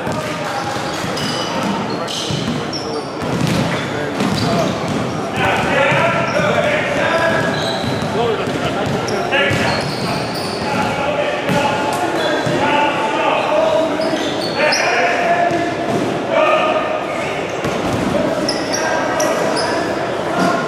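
Basketballs bouncing on a wooden gym court, with background voices talking, in a large echoing hall.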